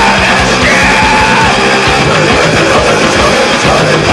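Loud, dense hardcore punk / heavy metal recording: distorted guitar and bass over a steady pounding drum beat, with a yelled voice over the top.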